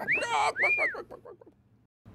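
A person's voice making two short high squeals that each rise and fall in pitch, trailing off into a fading croaky rattle, then quiet.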